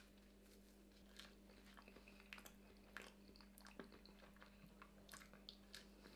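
Faint sounds of a banana being peeled and eaten: soft, scattered small clicks and mouth noises of biting and chewing, starting about a second in.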